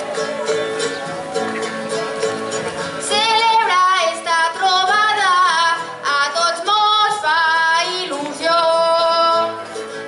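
Live jota music from a band of guitars and other plucked strings. About three seconds in, a woman starts to sing over it, holding long wavering notes in short phrases.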